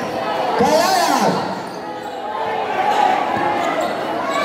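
Crowd of spectators at a basketball game chattering and shouting, with a louder shout about a second in, and a basketball bouncing on the court.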